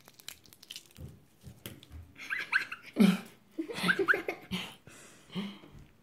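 Green slime being squeezed and worked in the hands, making a run of small wet, sticky clicks and squelches. A few short, high squeaky sounds come in the middle.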